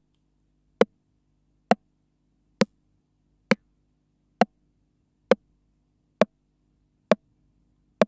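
Breadboard clone of the Roland TR-909 rimshot voice, its ringing bandpass filters triggered over and over: short, sharp rimshot hits about once every 0.9 seconds, ten in all. The tone of the hits changes as a 5K pot standing in for one bandpass filter's resistor is turned.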